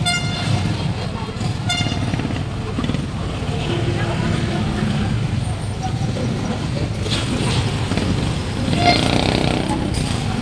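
Busy street-market ambience: a steady low rumble of motorcycle and tricycle engines, with background voices. Two short vehicle horn toots sound in the first two seconds.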